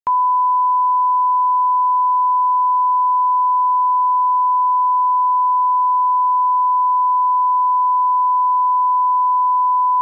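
A 1 kHz reference test tone, the line-up signal that goes with colour bars. It holds one unbroken, steady pure pitch.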